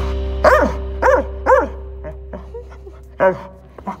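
A dog giving excited whining yips: three short calls about half a second apart, each rising then falling in pitch, and one more about three seconds in. A sustained music chord fades away beneath them.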